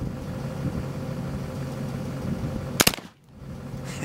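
A .54 caliber muzzleloading rifle loaded with 70 grains of black powder fires once, a single sharp shot nearly three seconds in, over a steady low hum.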